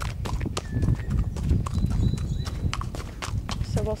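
A horse's hooves clopping on a dirt track as it is led at a walk, irregular strikes over a low rumble.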